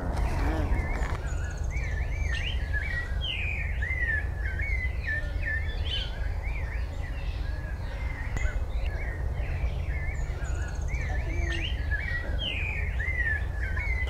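Several birds chirping and calling in a dense, overlapping chatter of short slurred whistled notes, over a steady low rumble.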